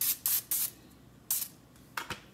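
Cooking oil being sprayed onto a frying pan in short hissing squirts: three quick ones, then a fourth about a second later.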